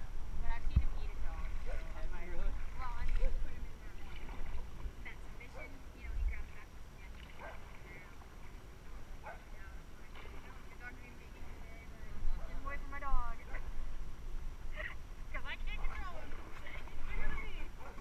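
Indistinct voices talking, heard in short scattered bursts over a steady low rumble.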